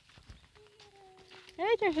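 Footsteps on a sandy dirt road, faint and scattered, and a faint held call that falls slightly in pitch for about a second, starting about half a second in.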